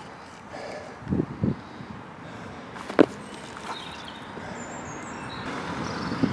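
A wooden square being handled against a tree trunk: two soft knocks about a second in, then a single sharp click about three seconds in.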